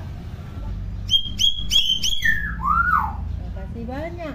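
Hill myna calling: four sharp, high whistled notes in quick succession about a second in, followed by a falling whistle and an arched rise-and-fall note.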